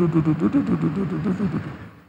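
A man's voice making a continuous, wordless, wavering vocal sound that carries on from his speech and fades away near the end.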